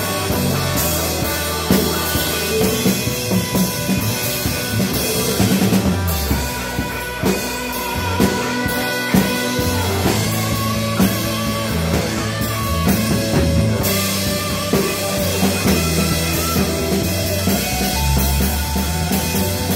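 A live rock band playing: electric bass holding low notes under two electric guitars, with a drum kit keeping a steady beat. The bass drops out briefly near the middle.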